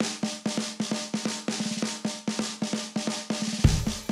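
Song intro starting abruptly: a fast drum pattern of sharp snare-like strikes, about four a second, over a held low note. A heavy bass hit joins near the end.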